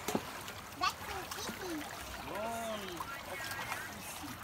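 Shallow stream water running and splashing around people wading in it, with two sharp knocks in the first second and voices in the background.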